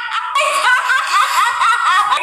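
A woman's high-pitched laughter in quick repeated peals, starting about a third of a second in.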